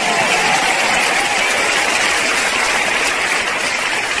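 Audience applauding, a steady dense clapping.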